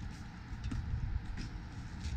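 Low, uneven rumble of wind on the microphone, with a few faint ticks.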